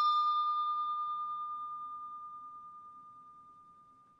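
The ringing tail of a single bell-like ding sound effect: one clear high tone with fainter overtones, fading away slowly and dying out near the end.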